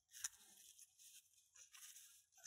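Near silence, with one faint click about a quarter of a second in: a Swiss Army knife blade working the core of a BAB padlock whose pins have been dumped out, turning it to open the lock.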